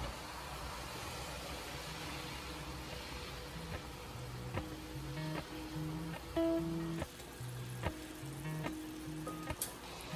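Soft background music: short low notes with light clicks, the notes becoming clear about four seconds in.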